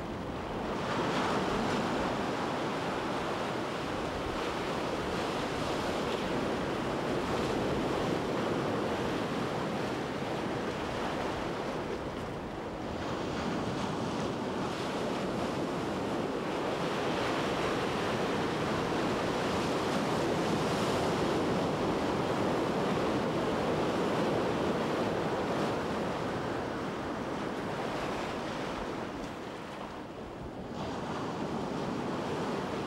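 Sea waves washing in a steady rush that swells and eases slowly.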